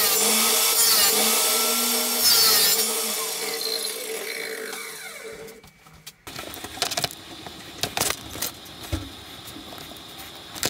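Bosch table saw cutting a piece of Turkish walnut, then switched off, its note falling as the blade winds down. After a brief silence come scattered light clicks and taps of small wooden pieces handled on a workbench.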